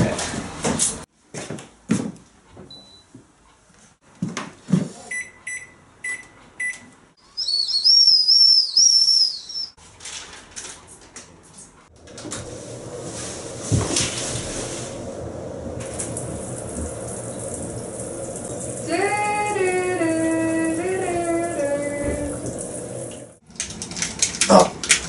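A string of small sounds: scattered clicks, four short beeps, then a high warbling whistle lasting a couple of seconds. About halfway in a shower starts running, a steady hiss that cuts off just before the end, with a few pitched notes stepping downward over it near the end.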